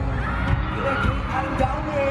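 Live K-pop concert music through an arena sound system, heard from among the audience: a singer's voice over a heavy, pulsing bass line, with the crowd underneath.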